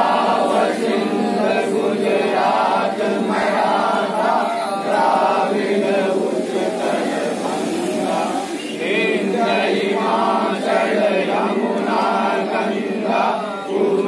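A group of men singing a patriotic song together in unison, unaccompanied, without a break.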